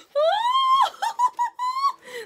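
A woman's high-pitched excited squeal, rising at first and held for about a second, then broken into several shorter squeals.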